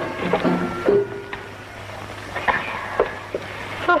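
A few soft held music notes in the first second, then a steady low hum with a few light clicks spaced through the rest.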